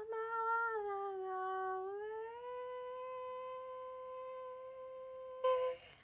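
A woman's voice holding a long wordless note: it rises in pitch about two seconds in and then holds steady for about three seconds, swelling briefly louder just before it stops near the end.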